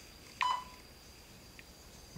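A single short beep from a tablet held up as a camera sync slate, a clear tone that rings briefly and dies away about half a second in, over a faint steady high whine.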